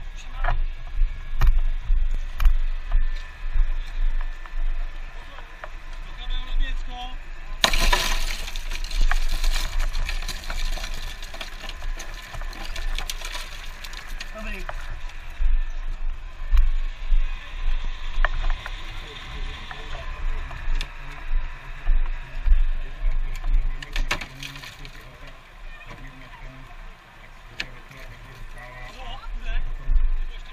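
A car's tempered-glass window being smashed out: a sudden burst of shattering glass about eight seconds in, lasting about a second and a half, with scattered clinks and knocks of glass and tools around it.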